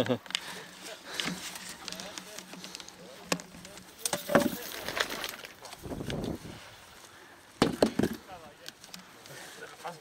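Loose field stones being lifted and set back onto a dry stone wall by hand: a few sharp knocks of stone on stone, the loudest about four seconds in and a quick cluster near eight seconds, with scraping and rustling in between.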